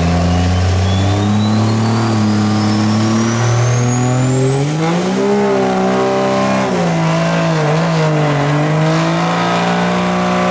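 Dodge Ram pickup doing a burnout: engine held at high revs while the rear tires spin, the revs climbing about five seconds in and easing back a second or so later. A thin high whistle climbs steadily over the first five seconds and then holds.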